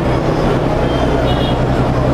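A steady low mechanical rumble, like a vehicle engine running, with a faint brief high tone a little over a second in.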